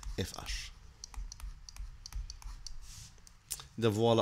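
Stylus clicking and tapping on a tablet's writing surface while symbols are handwritten: a run of light, irregular, sharp ticks.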